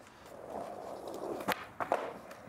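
Skateboard wheels rolling over a mosaic-tiled floor, then a quick run of sharp clacks, about a second and a half in, as the board is popped for a shove-it and landed.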